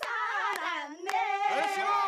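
A group clapping their hands in time, about two claps a second, while voices sing along with long held notes.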